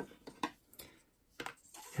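A few short, faint clicks and taps from handling a 35 mm film cassette and a bulk film loader, spread across the two seconds.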